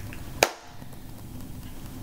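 A single sharp click about half a second in, over a faint low hum.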